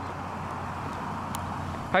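Ford Transit van driving up at low speed, its engine and tyres making a steady road noise.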